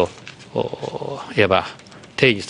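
A man speaking Japanese.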